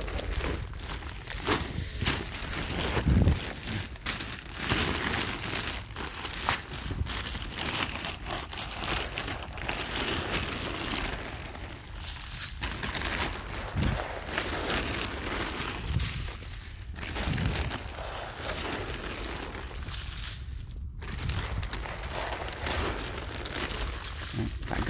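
Granular fertilizer being flung by hand around the base of a fruit tree, the granules landing on leaves and soil as a dense spray of small ticks and rustles, with a few dull thumps of steps or handling among the undergrowth.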